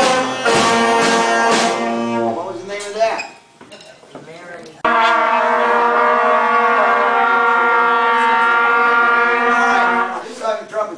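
School concert band of brass and woodwinds holding a chord that ends about two seconds in, followed by a few seconds of quieter voices. About five seconds in, a steady sustained chord from the band cuts in suddenly and is held to the end.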